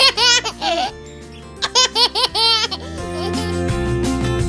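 Baby laughing in two bursts of high, wavering giggles about a second apart, over background music that grows louder near the end.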